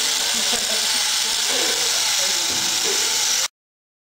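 Small DC toy motor running off a 9V battery and driving plastic gears on a threaded-rod axle: a steady, high whirring hiss that cuts off suddenly about three and a half seconds in.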